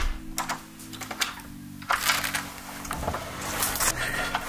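A door's deadbolt and latch being worked as the door is unlocked and pulled open: a sharp click at the start, a few more clicks, then a quick run of small rattling clicks in the last two seconds.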